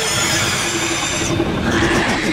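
A loud, dense swell of hissing, rumbling noise from trailer sound design, starting suddenly, with a steady high ringing that cuts off a little past halfway and a low steady hum beneath.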